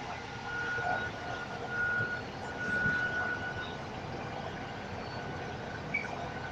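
Volvo B5TL double-decker bus heard from the upper deck while under way: steady engine and road noise through the cabin, with a thin high whine that comes and goes three times in the first four seconds.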